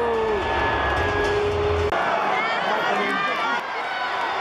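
Arena crowd at a live wrestling show. First comes a long, held shout over the steady bass of entrance music; about two seconds in, after a cut, many nearby fans yell and cheer at once.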